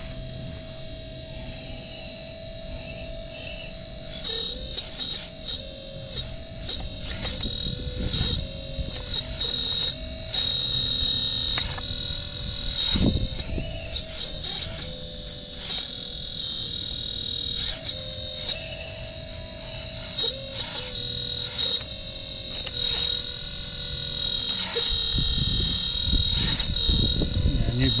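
A 1/12-scale full-metal hydraulic RC excavator working: its hydraulic pump whines steadily, the pitch stepping up and down as the controls are worked. Irregular clicks and knocks come from the arm and bucket digging into rooty ground.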